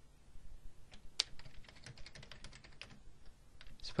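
Typing on a computer keyboard: a run of quick, irregular keystrokes starting about a second in.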